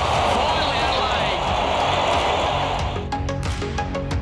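Stadium crowd cheering a goal, over background music with a steady beat. About three seconds in the crowd noise drops away and only the music is left.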